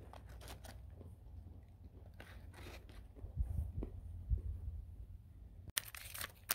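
Faint crinkling of a foil MRE snack pouch being handled, with quiet crunching of roasted peanuts being chewed: scattered soft rustles and clicks, a little louder near the middle.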